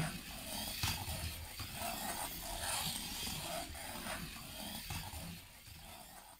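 Small DC gear motors of an Arduino line-follower robot running as it drives along the paper track, with a few faint light knocks; the sound fades out near the end.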